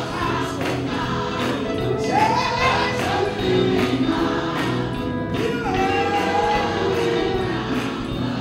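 Gospel choir singing with instrumental accompaniment, and percussion keeping a steady beat.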